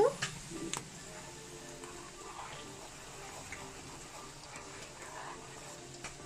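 Faint background music, with a couple of light clicks from a metal spoon against an enamel pot in the first second as powdered gelatin is stirred into boiling sugar water.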